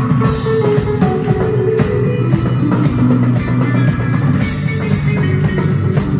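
A live indie rock band playing an instrumental passage: electric guitars, bass guitar and drum kit, loud and steady. Bright cymbal crashes come just after the start and again about four and a half seconds in.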